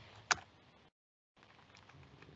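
A single sharp click of a computer key about a third of a second in, with a few faint clicks near the end; otherwise near silence.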